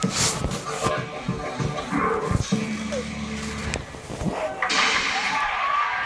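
Music and voices from a television playing a dance performance, mixed with knocks and bumps in the room. A loud, even rushing noise takes over near the end.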